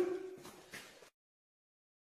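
Near silence: faint room tone fading out for about a second, with one tiny tick, then the sound drops out completely.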